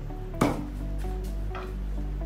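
Background music, with a single sharp wooden knock about half a second in as a plywood shelf's French cleat drops onto the wall cleat.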